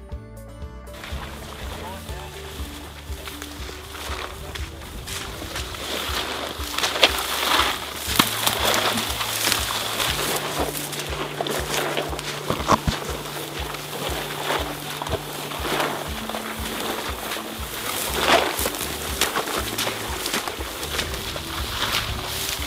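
Continuous rustling, swishing and crackling of tall dry marsh grass as people and a dragged rope push through it, with sharper snaps and brushes now and then. A soft music bed of low, held notes runs underneath.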